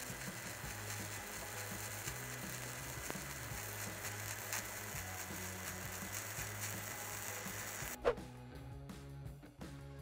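Crackling hiss of a stick-welding arc laying a hot pass on a steel pipeline joint, run hot, over background music. About eight seconds in the arc sound cuts off after a short rising sweep, leaving music with a steady beat.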